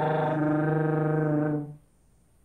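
Solo trumpet holding one low, steady note that fades out about three-quarters of the way through.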